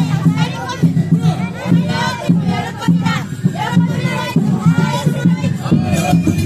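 A group of children chanting and shouting together in a festival dance chant, many voices at once, over a steady low beat.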